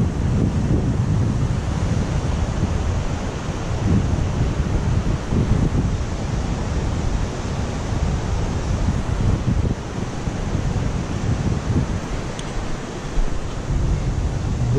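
Steady rush of river water, with wind buffeting the microphone in uneven low gusts.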